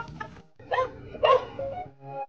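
Golden retriever barking twice, about half a second apart, over background music.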